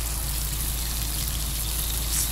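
Eggs and sausages frying in a pan on a gas stove: a steady sizzling hiss, with a constant low rumble underneath.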